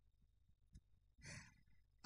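Near silence, broken about a second in by a man's short, breathy sigh into the microphone.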